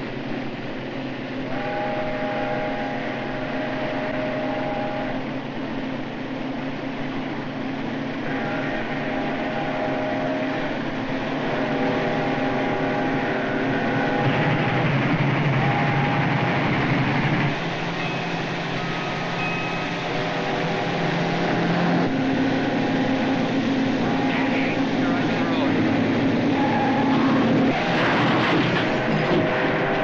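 Steam locomotive running at speed, its whistle sounding a series of long blasts, each a chord of several steady notes, over the rushing noise of the train. Near the end a louder, harsher burst of noise rises over it.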